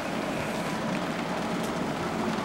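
Steady background hiss of room noise with no distinct event.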